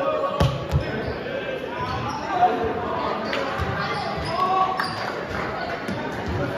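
Volleyballs striking hands and the hardwood gym floor: a few sharp slaps, two close together about half a second in and another a couple of seconds later. Players' voices carry throughout, and everything echoes in the large gym.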